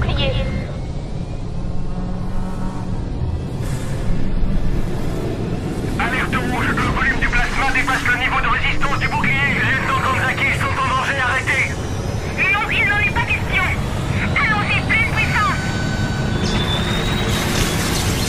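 Film soundtrack: voices over a steady low rumble, with a high electronic whine that rises and then holds steady near the end as the experimental device lights up.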